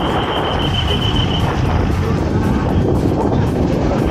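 Wind rushing over the microphone of a camera on a moving bicycle, a loud, steady noise mixed with road and traffic noise. A thin, steady high-pitched tone runs through roughly the first second and a half.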